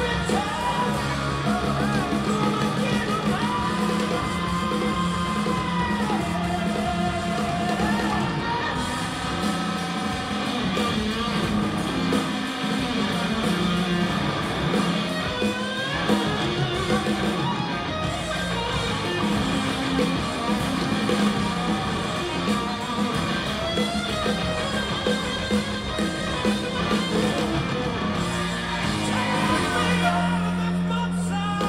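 Live rock band played loud through an arena PA and heard from the audience: a male singer's voice, including a long held note a few seconds in, over electric guitar and drums.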